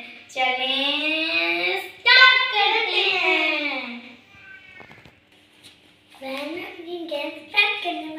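Children singing a short tune in long, sliding notes, with a pause of about two seconds in the middle.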